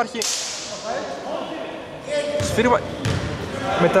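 Court sounds from an indoor basketball game: a sudden hiss near the start that fades over about a second, then a short shout and a couple of thumps.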